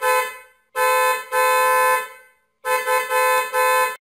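Car horn honking in a series of blasts: one fading just after the start, then a short honk and a longer held one, then about four quick toots that stop abruptly.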